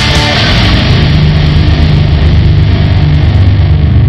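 A heavy metal duet on electric guitar and bass guitar, played loud, settling about a second in into a long held low chord.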